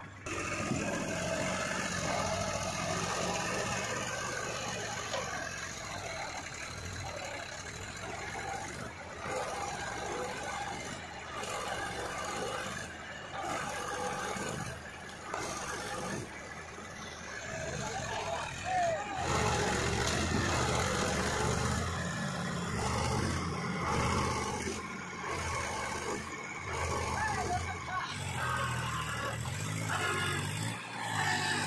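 Diesel engine of a Powertrac 434 DS Plus tractor running under load as it pulls a trolley loaded with mud, growing louder about two-thirds of the way through. Men's voices are heard over it.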